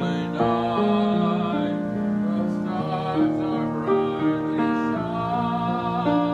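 Chords played on a keyboard instrument, with held notes that change every second or so.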